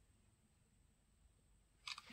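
Near silence, then the Samsung Galaxy S22 Ultra's camera shutter sound near the end, a single short click as the palm gesture triggers the selfie.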